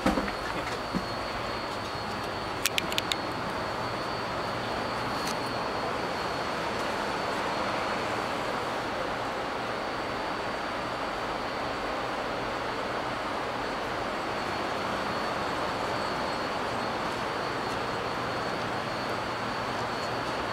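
Steady background hum and rush of a large indoor hall, like air-handling noise, with a faint high whine running through it. A knock at the start and a few light clicks about three seconds in.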